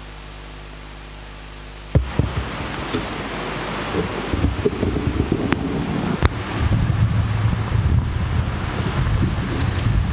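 Steady hiss with a low hum on the stream's audio, then about two seconds in a loud, rough rumbling noise cuts in abruptly and runs on, with a couple of sharp clicks.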